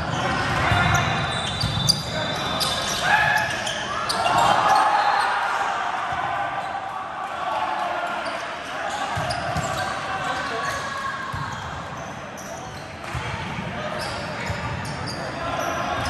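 Volleyball rally in a large, echoing gym: repeated sharp ball strikes and bounces among overlapping players' shouts and chatter.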